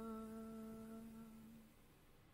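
A single unaccompanied voice holding one sung note, which fades away about a second and a half in.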